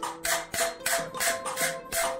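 Small hammer tapping a steel chasing tool into a thin copper sheet on an anvil, engraving a pattern with quick, even taps about five a second. Background music plays over the taps.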